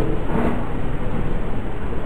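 Steady hiss and low rumble of the recording's background noise, with no speech.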